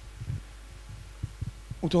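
Steady low electrical hum with a few soft low thumps in the pause, then a man starts speaking near the end.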